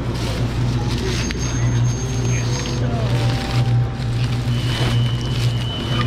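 Plastic carrier bags rustling and crinkling as they are gathered up and lifted, over a steady low hum from an electric train standing at the platform. A couple of thin, steady high tones sound briefly.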